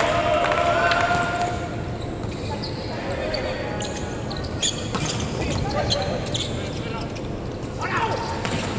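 Volleyball rally in an indoor hall: several sharp slaps of hands striking the ball as it is served and played back and forth, with players calling out to each other.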